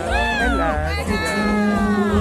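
Music with a steady bass throb, over which a high-pitched voice gives a short cry that rises and falls, then a long drawn-out call lasting about a second.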